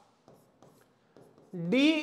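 Faint short taps and scratches of a stylus writing on an interactive display's screen: a few quick strokes in the first second and a half.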